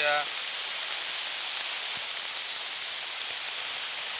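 Muddy floodwater rushing in a fast torrent across a road: a steady, even rush of water.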